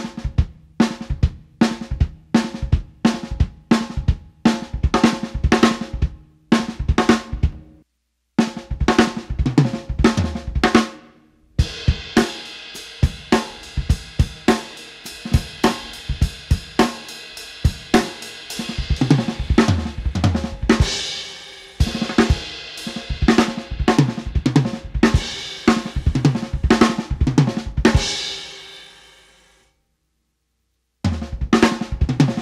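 Acoustic drum kit playing six-stroke roll phrases with the fourth and fifth notes taken by the kick drum (right, left-left, kick-kick), a choppy gospel or hip-hop chop feel. After a brief stop about a quarter of the way in, cymbals come in and ring on under the strokes. Near the end the playing dies away to silence.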